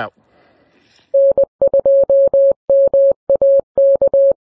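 Morse code sent as a single steady beep, keyed on and off in short and long elements starting about a second in, spelling out the amateur radio call sign N2MAK.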